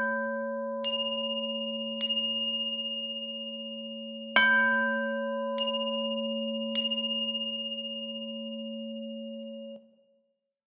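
Struck bells ringing: a deep, long-ringing bell tone struck at the start and again about four seconds in, with four brighter, higher strikes between them. All of them ring on together until they cut off suddenly near the end.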